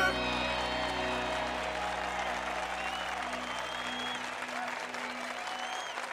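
Applause as a song ends, with the last sustained notes of the music dying away over several seconds.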